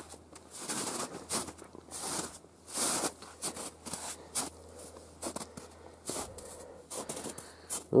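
Boots crunching through snow in slow, uneven footsteps, a few crunches each second.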